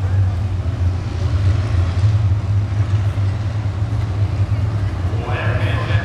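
A pack of IMCA Modified race cars running together around a short oval, their engines making a steady low drone. A voice comes in near the end.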